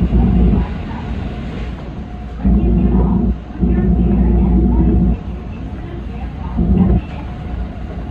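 Cab of a JR 313 series electric train running on, with a steady rumble, broken by several loud droning bursts that start and stop abruptly and last up to about a second and a half.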